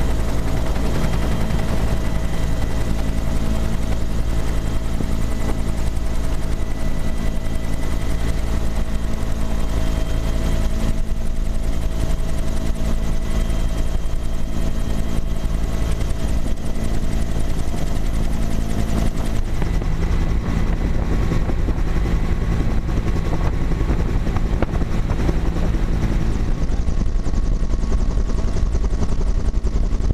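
Military helicopter in flight, its engine and rotor running at a steady, loud drone, heard from inside the cabin.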